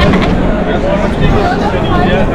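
Passersby's voices talking and laughing close by, over a steady low rumble.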